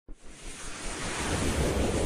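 Intro whoosh sound effect: a rush of noise with a low rumble underneath, swelling steadily louder.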